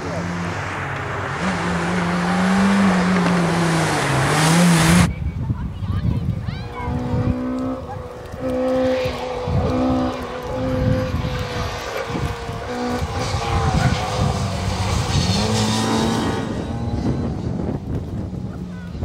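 Racing car engines at a slalom. For the first five seconds a turbocharged Mitsubishi Lancer Evolution runs with its engine note wavering up and down; then, after an abrupt cut, a small Opel Corsa A hatchback is driven hard, its engine note climbing and dropping again and again through gear changes and lifts, with a brief tyre squeal.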